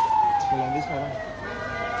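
An emergency vehicle's siren wailing: one tone sliding slowly down in pitch, then starting to rise again near the end.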